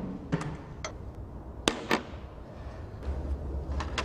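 Steel roller chain and its connecting link clicking as they are handled and fitted by hand: about six short, sharp clicks at uneven intervals, the loudest just before the middle.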